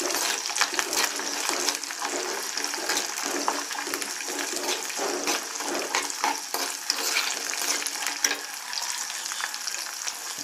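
Garlic cloves and curry leaves frying in hot oil in a clay pot, a steady sizzle with scattered crackles and the scrape and clink of a steel spoon stirring them.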